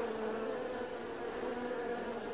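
A steady low buzzing drone from the music video's intro soundtrack, holding a level hum.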